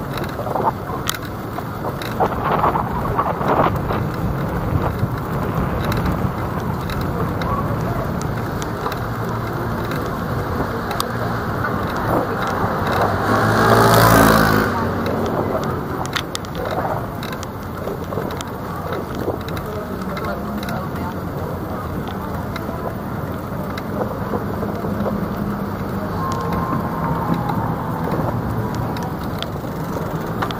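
City street traffic noise heard while moving along the road. A vehicle passes close about halfway through, rising to a loud peak and fading within a couple of seconds.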